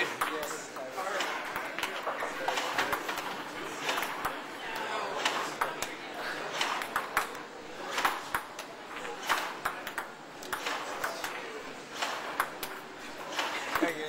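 Table tennis ball clicking off paddle and table in a running rally, about one or two hits a second, over the chatter of a watching crowd.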